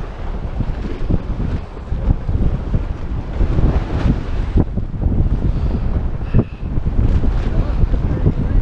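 Wind buffeting the microphone in a loud, gusty low rumble, with the sea washing against the foot of the wall underneath.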